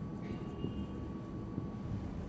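A marker writing on flip-chart paper, with a faint brief squeak in the first second, over a steady low room rumble.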